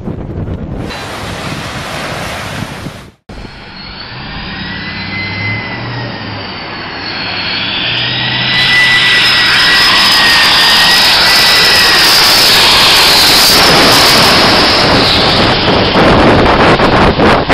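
Jet noise from a departing airliner climbing away, cut off suddenly about three seconds in. Then a Boeing 747's jet engines on final approach: a wavering high whine over a broad rush that grows steadily louder and stays loud as the jumbo comes in low and lands.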